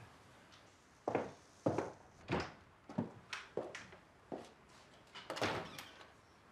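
A series of about eight soft knocks and thuds, irregularly spaced, the loudest near the end.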